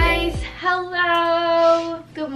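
Background music with a bass line ending in the first half second, then a young woman's voice singing one long held note.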